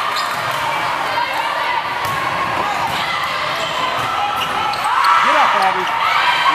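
Volleyball rally in a large gymnasium: several sharp smacks of hands on the ball, over the echoing hubbub of spectators' and players' voices. The noise swells near the end.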